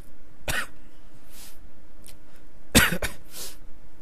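A man coughing twice, about half a second and about three seconds in, each cough followed by a breath in.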